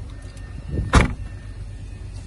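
Mercedes-Benz A-Class hatchback tailgate swung down and shut about a second in: a brief rush, then one loud thud as it latches.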